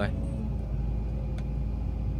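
Excavator's diesel engine running steadily as the machine travels, heard from inside the cab as an even low rumble.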